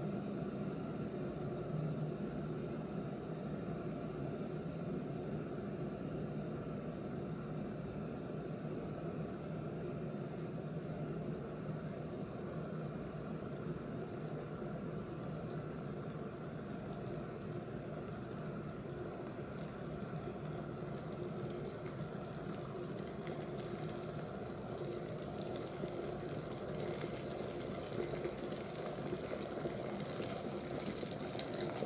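Cosori glass electric kettle heating water: a steady low rumble as the water nears the boil, with a crackling fizz of bubbles building in the last several seconds as it comes to a rolling boil.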